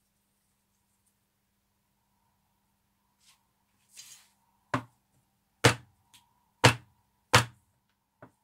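Four sharp knocks, about a second apart in the second half, as a plastic bath bomb mould casing is rapped down on a worktop to loosen the bath bombs stuck inside it. A faint rustle comes just before them.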